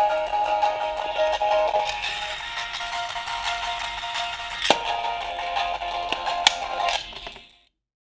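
Music played through two small coin-sized 8-ohm speakers driven by a 3 W Bluetooth amplifier module, sounding thin with little bass, the speakers pressed against a screwdriver-bit case that serves as a sound box. Two sharp knocks come about halfway through and near the end, and then the music fades out.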